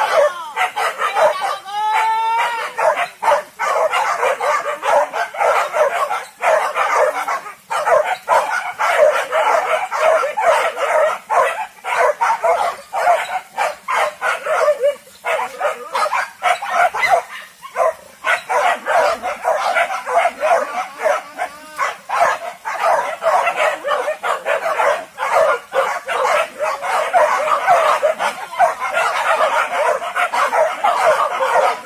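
A pack of hunting dogs barking and baying continuously at a wild boar, many barks and yelps overlapping with no break.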